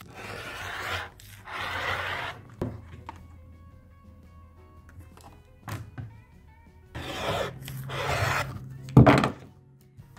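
Rotary cutter slicing through quilting cotton along an acrylic ruler on a cutting mat: several long scraping strokes, two near the start and two more later on, over light background music. A sharp knock near the end is the loudest sound.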